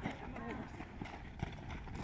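Sound of an amateur football match in play: players' faint distant shouts over a low wind rumble, with a few short thuds.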